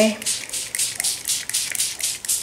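Hand trigger spray bottle spritzing beet juice onto paper in rapid, evenly spaced squirts of hiss, about five a second.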